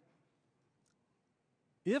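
Near silence: a pause in a man's speech, with one faint tick about midway, then his voice starts again near the end.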